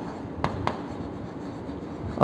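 Pen writing on an interactive display screen, with two light taps about half a second in.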